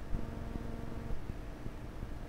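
Steady background hum and low rumble of the microphone and computer recording setup, with a few faint ticks.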